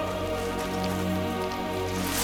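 Dramatic film background score of sustained, held chords, with a light patter of rain beneath it.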